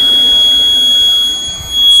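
Fire alarm sounder in alarm after a manual call point activation, giving one continuous, steady, high-pitched tone.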